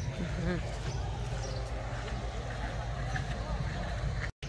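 Faint voices in the background over a steady low rumble, with a brief murmur of speech in the first half-second.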